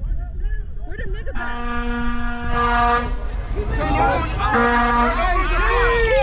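A car horn sounds one steady blast of about a second and a half, then a short toot about a second and a half later, over the voices of a crowd talking.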